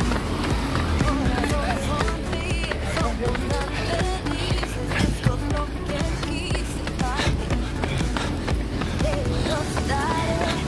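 Music with a singing voice, heard over a runner's footsteps and a steady low rumble of wind on a moving phone microphone.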